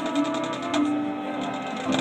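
Marching band playing: held wind chords over a rapid, evenly repeated percussion pattern, with a new chord coming in near the end.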